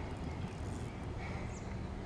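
Quiet outdoor background noise: a steady low rumble with a faint hiss, and no distinct event.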